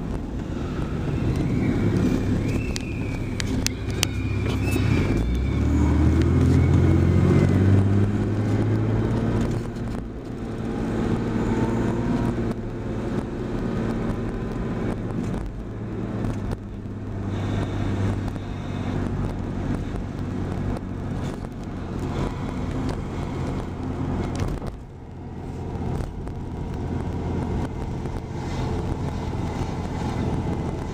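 Car engine and tyre noise heard from inside the cabin. About five seconds in the engine rises in pitch and gets louder as the car accelerates, then it settles into a steady hum while cruising.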